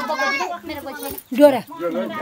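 Only voices: women talking and calling out to one another in short, excited phrases.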